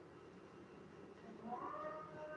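Near silence, then about a second and a half in a faint drawn-out call starts, its pitch gliding up and then holding steady.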